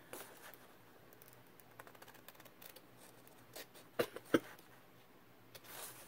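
Scissors snipping through printed paper: a few faint snips, then two sharper snips about a third of a second apart, about four seconds in.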